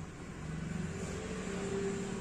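Opened Acer DLP projector running on power-up: steady hum from its cooling fan and colour-wheel motor, with a tone that grows louder about half a second in. This is a start-up that ends in a protection-mode shutdown, which the repairer blames on dust on the colour-wheel sensor.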